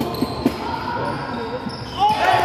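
A basketball dribbled on a wooden court: two bounces about a quarter of a second apart.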